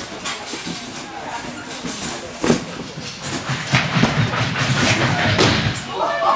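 Thuds and rumbling of a person running and landing on a sprung gymnastics tumbling floor: a sharp thump about two and a half seconds in, a rumbling stretch after it, and another thump near the end as he comes down on the floor.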